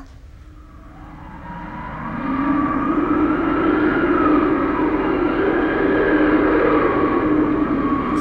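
Stage sound effect of a howling blizzard wind. It fades in over the first two seconds, then runs steady with a wavering, rising-and-falling whistle in it.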